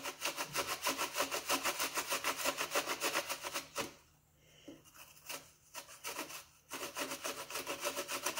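Apple being grated on a stainless steel box grater, with quick, even rasping strokes about four a second. About four seconds in the grating stops for nearly three seconds, leaving a few lone strokes, then it picks up again.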